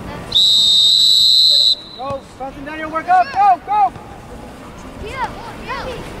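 A referee's whistle gives one long, loud blast of about a second and a half to start play at kickoff. It is followed by several short shouts from people around the pitch.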